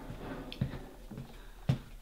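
Faint footsteps on a wooden board floor as someone walks slowly forward, with one sharper knock near the end.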